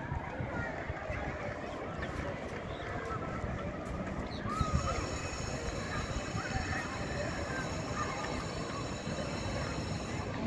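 Outdoor school-ground ambience: distant children's voices carrying across the field, with low rumble from wind on the phone's microphone. A set of faint steady high tones comes in about halfway through.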